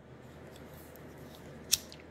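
A single short, sharp click about three quarters of the way through, over faint room tone with a few fainter ticks.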